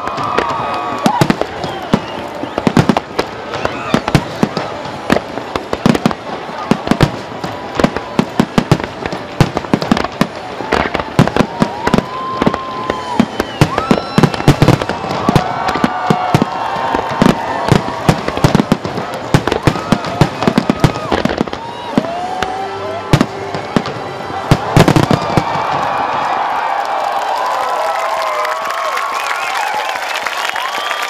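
Aerial fireworks shells bursting in a rapid, dense barrage of bangs and crackles, ending about 25 seconds in with a last heavy volley. After it, a crowd cheers and applauds.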